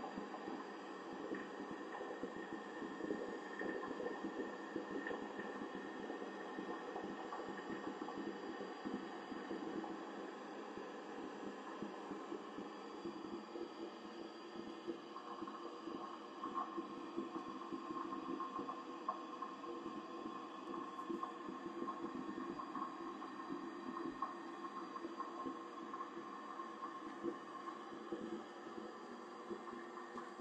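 Navien NCB combi boiler running with its burner lit, a steady hum of combustion and fan noise. A slightly higher steady tone joins about halfway through.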